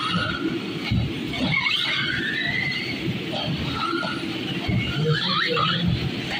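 Electric 1/10-scale off-road RC cars racing on a carpet track: short motor whines rise and fall in pitch as they speed up and slow down, over a steady rumble with irregular low knocks from the cars running over the track.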